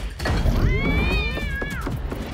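An animated cat character's drawn-out yowl, a battle cry that rises and then falls over about a second. Under it runs a heavy low rumble.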